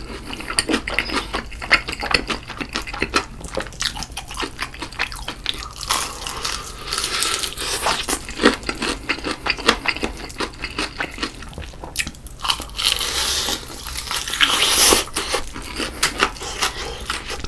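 Close-miked biting and chewing of a crispy battered fried chicken drumstick, a dense run of crunches from the crust.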